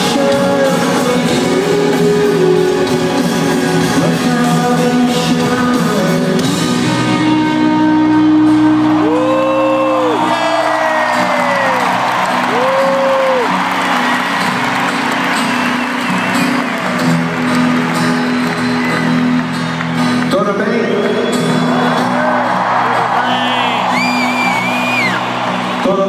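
Rock band playing live in a stadium: held chords under long, arching sung notes, with the crowd cheering and singing along, loudest in the middle.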